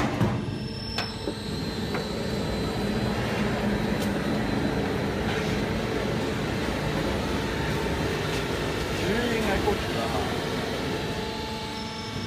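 Hat purlin roll forming machine running: a steady mechanical hum with level tones, opened by a sharp metallic knock.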